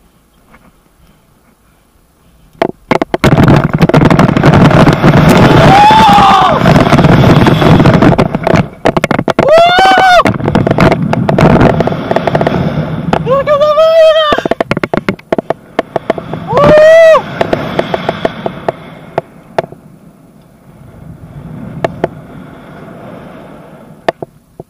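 Wind rushing loudly over a body-worn camera's microphone as a rope jumper free-falls and swings on the rope. The jumper lets out four long yells that rise and fall in pitch. The rush starts about three seconds in and dies down to a softer rush over the last few seconds.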